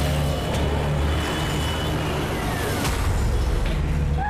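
Dramatic background score with deep, pulsing bass notes and a few sharp hits.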